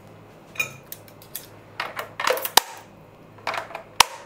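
A few short, scattered clinks and clatters of kitchen utensils being handled, the busiest stretch about two seconds in and ending in one sharp click.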